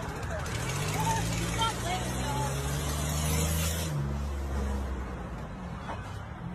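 Car engine running close by in the street, its pitch rising slightly and then changing at about four seconds, with voices in the background.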